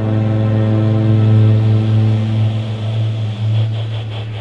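Electronic music held on a loud, sustained low drone, one deep tone with a stack of overtones above it; the upper overtones fade after about two and a half seconds, and a faint pulsing comes in higher up near the end.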